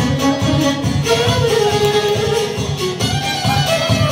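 A live folk band playing an instrumental passage between sung verses: a melody line over a steady beat.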